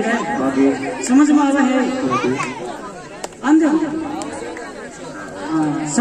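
Speech only: a man talking through a microphone and public-address loudspeakers, with other voices chattering.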